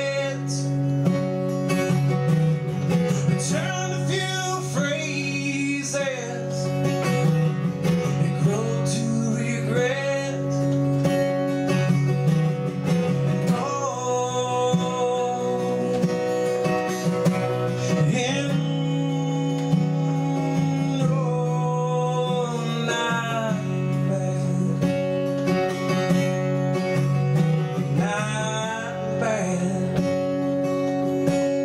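Acoustic guitar played with a man singing along into a microphone, a song with long held vocal notes.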